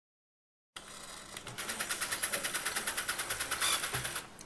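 Electric motors of a robotic prosthetic hand running as its fingers move, a steady whir with a fast, even pulse that starts abruptly about a second in.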